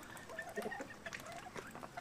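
A backyard flock of chickens clucking quietly while feeding, in short scattered calls with small clicks in between.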